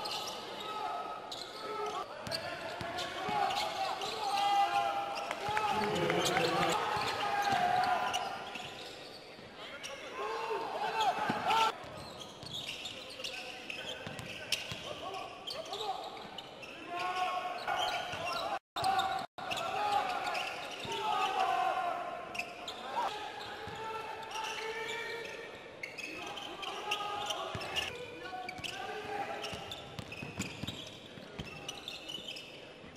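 A basketball bouncing on an indoor court during play, with the sharp strikes of dribbling, under voices that carry on almost throughout in the echoing hall. The sound cuts out twice, briefly, just before the 19-second mark.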